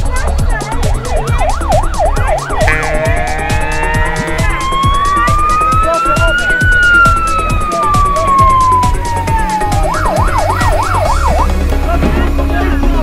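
Emergency-vehicle siren: a fast yelping warble, then one long wail that rises slowly and falls away, and a fast warble again near the end. An electronic music beat runs underneath.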